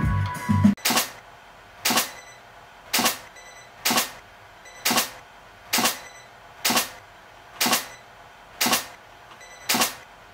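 Ten sharp clicks at an even pace of about one a second, each dying away quickly.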